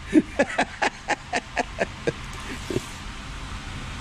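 A man laughing: a run of short breathy 'ha' bursts, about four or five a second, that tails off after about two seconds into a few scattered ones.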